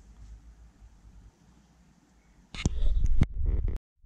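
Handling noise: a faint low rumble, then a loud burst of bumps and knocks for about a second, cutting off suddenly near the end, as the camera is moved.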